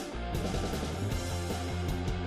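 Band music with guitar over a steady drum beat.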